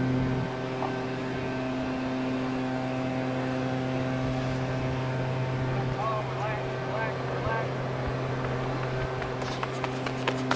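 A steady, pitched mechanical hum, as from a motor or engine, with faint distant voices about six seconds in. Near the end come quick sharp footfalls of a sprinter on the track.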